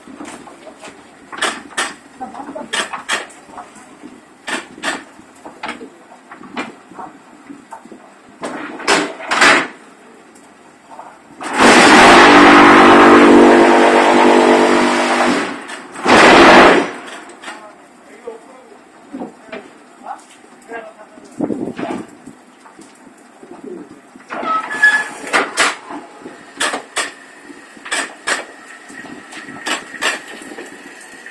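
QT4-24B semi-automatic fly ash block machine at work: scattered metal clanks and knocks from its moulds, levers and pallets, then about twelve seconds in a loud buzzing run of some four seconds, followed by a short second burst. The buzzing is the vibrating table compacting the fly ash mix in the mould.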